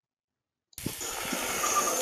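Meat sizzling on a charcoal grill: a steady crackling hiss that cuts in abruptly about three-quarters of a second in, after silence.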